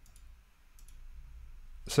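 A few faint computer mouse clicks in a quiet room, then a man begins speaking near the end.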